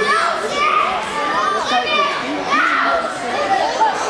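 Children's high-pitched voices shouting and calling out, several overlapping, in a large hall.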